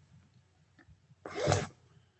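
A single short, breathy vocal sound from a man, about half a second long, a little past halfway through; otherwise near silence.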